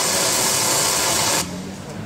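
A loud, steady hiss that cuts off abruptly about one and a half seconds in.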